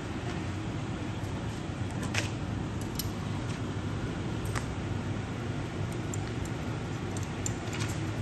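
Steady low roar of glass-studio furnaces and burners, with a few sharp metal clinks from glassblowing hand tools and the pipe on the bench, several close together near the end.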